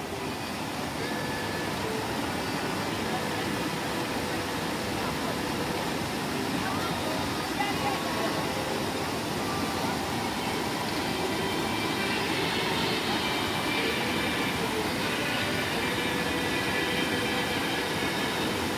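Mountain stream rushing over boulders in small cascades: a steady noise of running water. Faint voices come and go beneath it.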